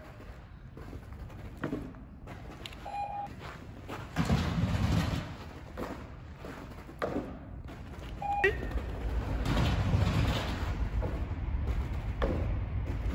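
A dog running and jumping on artificial turf in a large hall: soft patter and rustle of running feet in two stretches, with a few light knocks. Two brief beep-like tones, about three seconds and eight and a half seconds in.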